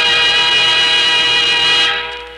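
Radio-show theme music: one loud held chord that breaks off near the end and fades.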